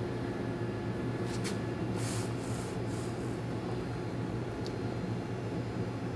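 A steady low electrical hum with a faint hiss of room noise. A few soft clicks and a brief rustle come about two seconds in.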